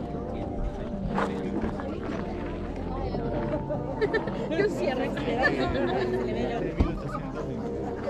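Indistinct chatter of several people talking at once, no clear words.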